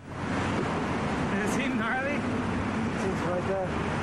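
Steady outdoor street noise, a low rumble with hiss, coming in abruptly at the start, with a few brief snatches of a man's voice about two and three and a half seconds in.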